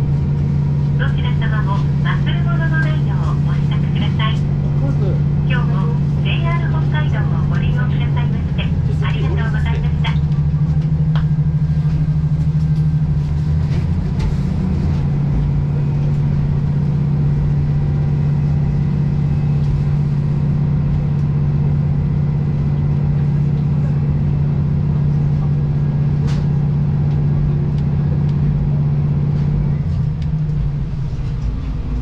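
Steady low diesel engine hum heard from inside a moving vehicle, with a voice in the first ten seconds.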